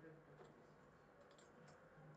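Near silence, with a few faint clicks from a computer keyboard in a short pause between bursts of typing.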